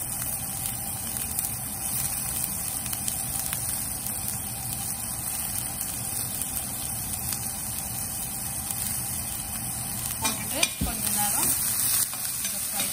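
Chopped onions sizzling steadily in hot oil in a stainless steel frying pan. A little before the end, a slotted metal spoon scrapes and knocks against the pan as the onions are stirred.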